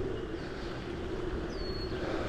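Steady low outdoor rumble of a residential street, with one short, high, downward-sliding bird chirp near the end.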